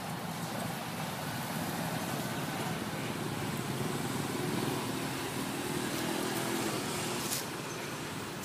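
Motorbike road traffic going by, with one engine running clearly for a few seconds in the middle.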